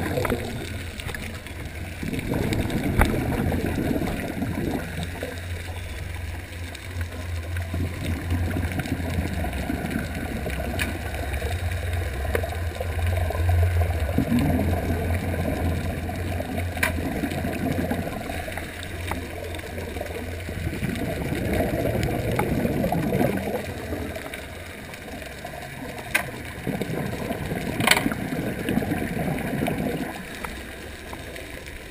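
Muffled underwater sound heard through a camera housing: the gurgle of a scuba diver's regulator breathing and exhaled bubbles, swelling and fading every few seconds. There is a low steady hum under it through the middle, and a few sharp clicks.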